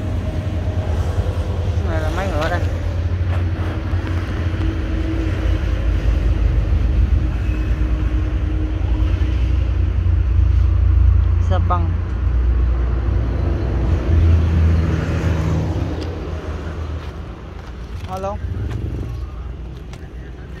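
Small Mitsubishi 5 hp petrol engine of a power sprayer running steadily, driving its pump, a low, even hum, somewhat quieter in the last few seconds.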